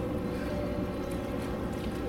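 Water in a zoo polar bear pool, heard as a steady low rumble, with a faint steady hum underneath.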